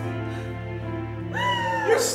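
A steady low chord of background music held under the scene. About a second and a half in, a woman's high-pitched wailing cry rises sharply and then slowly sinks in pitch.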